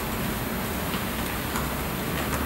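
Steady room noise, a hiss with a low hum under it, with a few faint scattered clicks.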